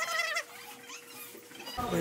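A voice counting unicycle hops aloud in Korean in a drawn-out, wavering tone, breaking off briefly in the middle and resuming near the end.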